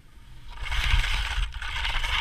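Skis carving and scraping over firm, crusty snow, starting softly and growing loud about half a second in, with the low rumble of wind on the camera microphone.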